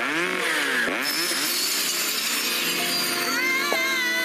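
A firefighter's power rescue saw running and cutting, its pitch sweeping down and back up several times as it loads and frees. Near the end a girl's high scream rises and holds.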